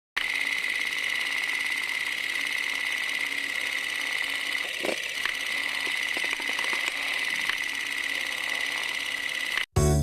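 Electronic drone of an animated logo ident: one steady high-pitched tone over a hiss, with a few faint clicks around the middle, cutting off suddenly just before the end.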